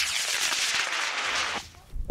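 Hobby rocket motor firing at launch: a sudden loud hissing whoosh that holds for about a second and a half, then fades away.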